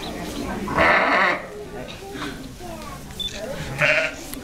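Sheep bleating: one loud, wavering bleat about a second in, and a shorter one at the end.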